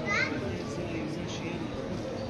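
Background chatter of a crowd, many voices talking at once, with a short, high-pitched rising call from one voice just after the start.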